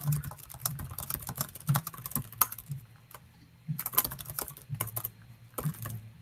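Typing on a computer keyboard: quick, irregular key clicks with a short pause about halfway through, over a faint low hum.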